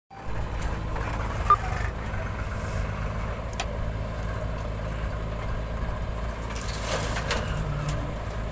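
Diesel engines of a JCB 3DX backhoe loader and farm tractors running steadily while the backhoe digs and loads soil. One sharp knock stands out about a second and a half in, with a few fainter knocks later.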